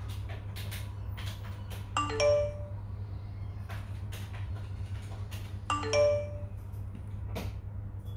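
A short electronic chime of a few notes entering one after another and rising, heard twice about four seconds apart, with faint clicks in between over a steady low hum.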